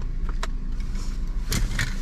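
Car engine idling with a steady low rumble, heard from inside the cabin, with a sharp click about half a second in and a few short clicks and rustles near the end.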